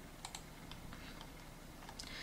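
Faint, scattered clicks of a computer being worked, several irregular taps over a low hiss.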